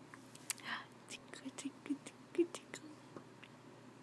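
A baby mouthing and sucking on its fists: a quiet run of short, wet mouth clicks and smacks, a breathy puff about three quarters of a second in, and a few soft, brief vocal sounds.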